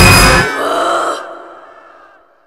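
Film soundtrack: loud action music and effects cut off about half a second in, leaving a fainter pitched, voice-like sound that fades away to silence.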